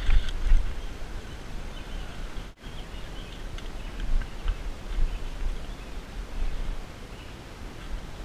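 Low, uneven wind buffeting on a body-mounted camera's microphone while riding. After a break about a third of the way in, there is rustling and handling noise as the bike is moved and leaned against a wall.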